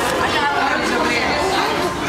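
Indistinct chatter of several people talking at once, with no words clear.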